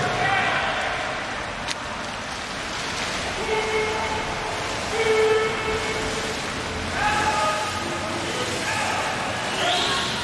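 Echoing swimming-pool race ambience: a steady wash of splashing water and crowd noise, with short shouted cheers about three and a half, five, seven and nine and a half seconds in.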